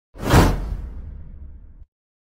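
Whoosh sound effect with a deep boom beneath it: it swells quickly, then fades over about a second and a half before cutting off sharply.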